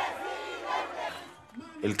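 A large rally crowd shouting and cheering, dying down about a second and a half in.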